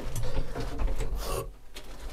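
Tractor cab window being pushed shut by hand, its frame and latch rubbing and clicking, over the low steady hum of the Tümosan 6065 tractor's diesel engine heard from inside the cab.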